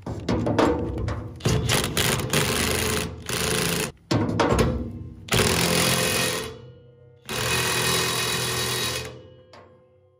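DeWalt 20V cordless impact wrench with a large impact socket hammering in several bursts as it tightens the big nut that holds a brush hog's blade carrier on. The nut needs somewhere between 300 and 600 foot-pounds, and the wrench is run near its 700 foot-pound limit.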